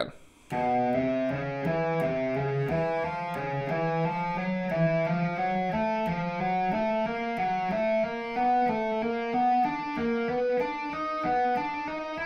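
Electric guitar played legato with hammer-ons only and no picking: an even, unbroken stream of single notes that starts about half a second in, running in short overlapping groups of four that climb step by step up the neck.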